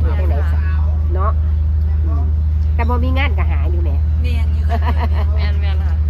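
A woman talking with short pauses, over a loud, steady low hum.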